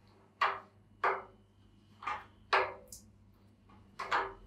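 Four short, sharp knocks and clicks of a beer line's connector being pushed and tightened onto the plastic tap of a cask.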